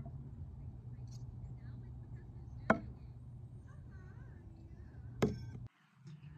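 A thrown knife strikes the target with a single sharp thunk about halfway through, over a faint steady low hum. A second short click with a brief ring follows near the end.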